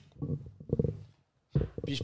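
Faint, muffled voice sounds picked up off-microphone, then a brief stretch of dead silence, then a man starts speaking again near the end.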